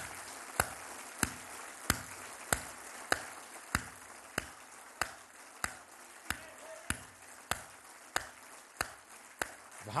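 A standing audience applauding together in a steady rhythm, one sharp clap about every two-thirds of a second over a haze of scattered clapping.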